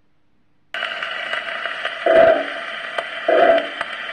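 Playback of a 1910 Homocord shellac 78 rpm record on a gramophone: surface hiss starts suddenly about a second in, then the orchestra comes in with two loud notes about a second apart. The tone is thin and narrow, like a telephone, as early acoustic recordings sound.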